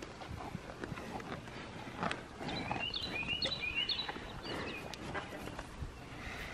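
A cow chewing green beans close up: faint, irregular crunching clicks of munching.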